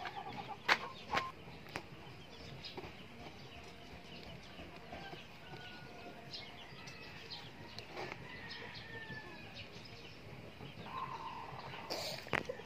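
Faint chickens clucking in the background, with a couple of light taps in the first second.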